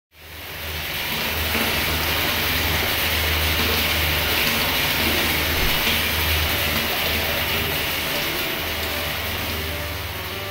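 Intro of a synthwave track: a loud rushing noise wash fades in over the first second and holds steady over a low drone. Faint pitched synth notes begin to enter near the end.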